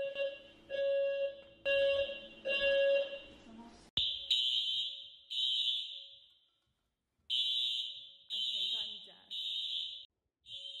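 Apartment-building fire alarm going off: first an in-unit alarm pulsing about once every second, with a mid tone and a shrill high tone together. Then, after a sudden cut about four seconds in, a louder, higher-pitched buzzer sounds in blasts about a second long, with one longer pause between them.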